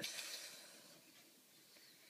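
Near silence: faint room hiss, as the tail of a spoken word dies away at the start.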